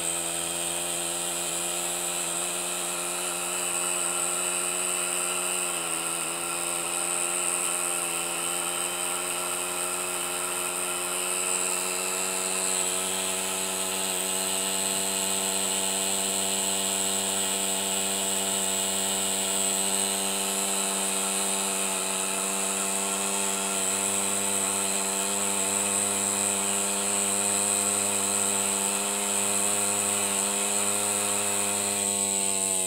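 Hand-built miniature steam engine running fast and steadily: a high mechanical buzz with a steady hiss above it. It is warmed up and running without a load. Its pitch dips briefly a couple of times.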